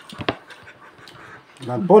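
Quiet sounds of people eating at a table, with a couple of brief clicks about a quarter of a second in; a man starts talking near the end.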